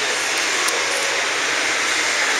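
Steady background hiss of a large exhibition hall, even and unbroken, with a few faint ticks.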